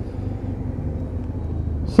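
BMW F800's parallel-twin engine running steadily while riding, a low even hum with wind and road noise over the bike-mounted microphone.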